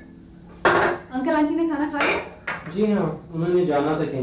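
Dishes and cutlery clinking: two sharp, ringing clinks, one just over half a second in and another at about two seconds, with voices talking between them.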